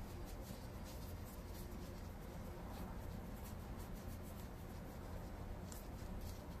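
Hands squeezing and rubbing a terry cloth towel caked in scouring powder inside a basin of the powder, giving soft, quick crackling and scratching sounds, over a steady low background rumble.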